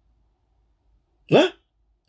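A man's single short questioning interjection, 'Hein?', rising in pitch, about a second and a quarter in, after a silent pause.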